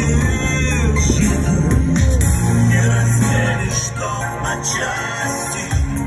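A man singing into a microphone over a recorded backing track with a strong bass line, amplified through PA loudspeakers.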